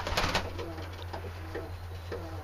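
Domestic pigeons cooing softly in a loft, with a brief loud rustle just after the start. A steady low hum runs underneath.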